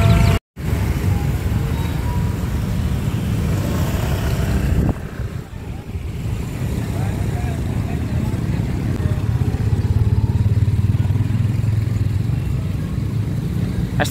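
Street traffic: small motorbike engines running and passing, with voices in the background. A low engine hum swells about two-thirds of the way through, and the sound cuts out briefly half a second in.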